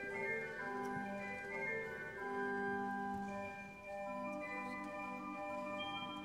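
Church pipe organ playing slowly in held chords, the notes sustained and changing from one chord to the next, with a brief dip in loudness just before the four-second mark.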